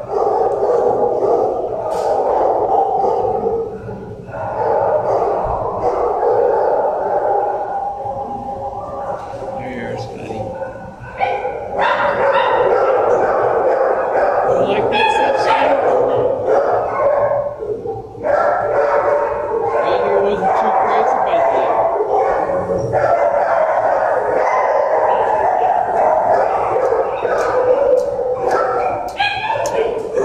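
Many dogs barking and yipping at once in a shelter kennel block: a loud, near-continuous din with brief lulls.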